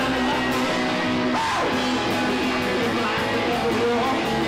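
Live garage rock band playing, with electric guitars strumming; one note slides down in pitch about a second and a half in.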